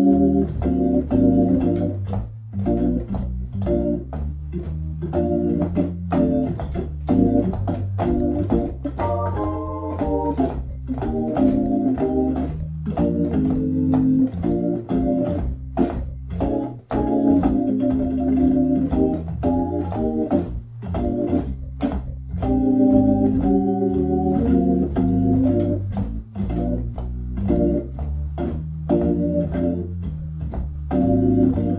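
Hammond B3 organ playing an F blues, with a bass line in the left hand and chord comping in the right, both on the lower manual. The drawbars are set at 808000000 (the first two out), giving a clean tone without upper harmonics. The chords come in short, clicky stabs over the steady bass.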